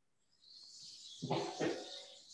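A short dog-like vocalisation, rising out of a faint hiss about half a second in, with two louder pitched pulses in the second half.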